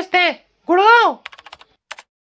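A high-pitched voice finishing a word, then one drawn-out vocal exclamation that rises and then falls in pitch. About a second and a half in it is followed by a quick run of faint clicks.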